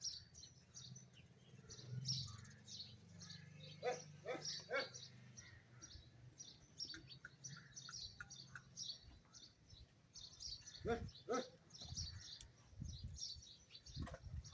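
Small birds chirping in many short, high calls, faint and scattered throughout, with a faint low hum under the first half.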